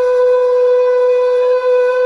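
Soundtrack music: one long wind-instrument note held steady at a middle pitch.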